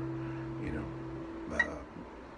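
A chord on a steel-string acoustic guitar rings out and fades, then is damped about one and a half seconds in. A short click of finger or string noise follows.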